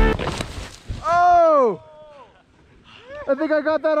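A man's loud drawn-out yell, rising then falling in pitch, as a snowboarder crashes into a small tree. From about three seconds in comes a quick run of laughter.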